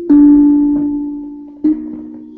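A tuned instrument sounding two low notes: a loud one right at the start and a second about a second and a half later, each ringing and slowly fading.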